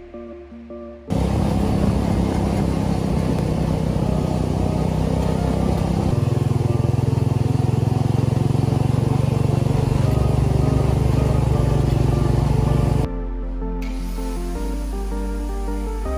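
Background music, then about a second in the buggy's swapped-in 440cc engine running loud under way for about twelve seconds, its note stepping down partway through. Music returns near the end.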